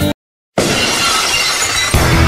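Glass-shattering sound effect: a sudden crash of breaking glass about half a second in, after a moment of total silence, its glittering noise carrying on for over a second.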